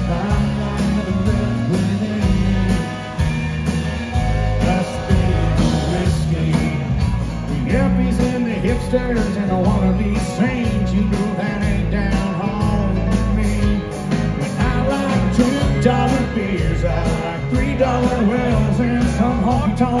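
Live country band playing a song: drums keep a steady beat under guitars and keyboard, with a voice singing over it.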